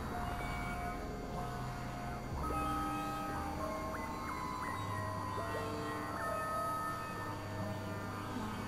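Experimental synthesizer drone music: several held electronic tones at once that jump abruptly to new pitches every second or so, over a steady low hum.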